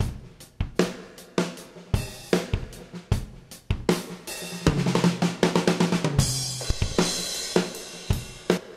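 Soloed drum-kit track from a multitrack recording playing back on its own, with kick, snare and hi-hat strikes in a steady beat. A fast run of hits comes about halfway through, and a crash-cymbal wash follows near the end.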